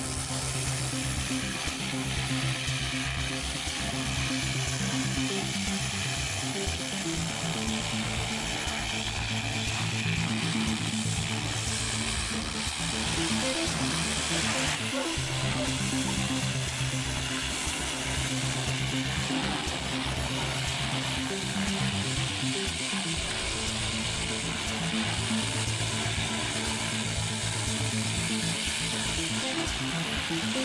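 Background music with a slow, repeating bass line, over the steady hiss of a high-pressure water jet blasting bark off a log through a turbo nozzle.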